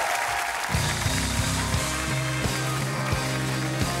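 Studio audience applause that gives way, under a second in, to the live house band playing: a steady bass line and a regular drum beat with guitars.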